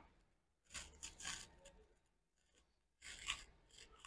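Near silence with a few faint, brief rubbing or scraping sounds: about a second in, again just after, and once more near the end.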